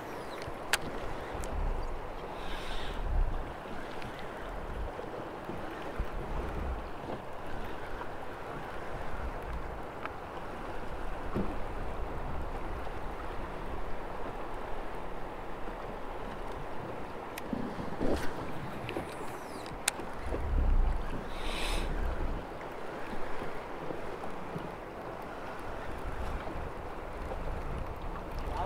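Wind gusting on the microphone over a steady wash of river water. Two brief hissing swishes come a few seconds in and again about three-quarters of the way through, with a few faint clicks.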